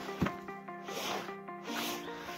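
Background music with held, stepping notes, over a single light knock about a quarter second in and soft rustling.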